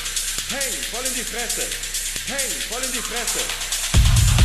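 Techno track in a breakdown with the kick and bass out: a synth figure of short notes that bend up and back down in pitch, repeating in groups about every two seconds, over fast hi-hats. The kick and bass drop back in right at the end.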